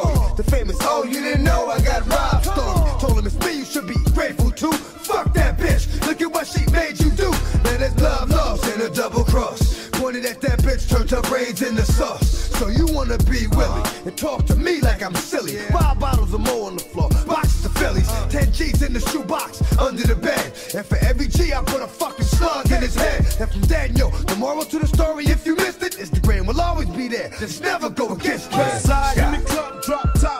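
Hip hop track: rapping over a beat with heavy, pulsing bass.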